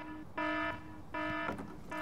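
Game-show wrong-answer buzzer sound effect sounding twice, each a short steady buzz about a third of a second long, marking the answer as wrong.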